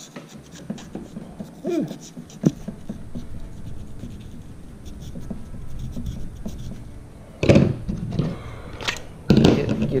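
A boning knife scratching and cutting at the rough, sandpaper-like skin of a dogfish shark as it is worked under the skin behind the gills. Small scratches and handling noise run throughout, with two louder scrapes near the end.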